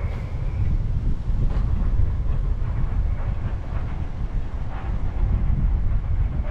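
Wind buffeting the camera microphone in a steady low rumble.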